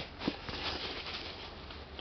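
Faint rustling and rubbing of hands handling a Puma ST Runner v2 sneaker, fingers moving over its laces and upper, with a couple of soft clicks in the first half. A low steady hum runs underneath.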